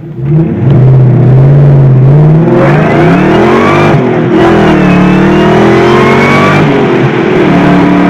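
SVT Mustang Cobra's 4.6L DOHC V8 heard from inside the cabin while driving. The engine pulls under acceleration, its pitch rising, dipping and rising again, then it settles to a steadier, lower note near the end.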